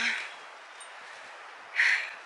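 A woman's speech trailing off, then a steady faint hiss, and near the end one short, sharp sniff through the nose, loud and close to the microphone.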